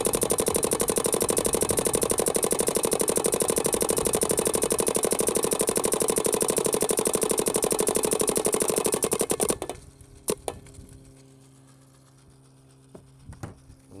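Planet Eclipse Geo 4 electronic paintball marker firing a long, very fast, even string of shots in ramping mode, stopping abruptly about nine and a half seconds in. A couple of single clicks follow.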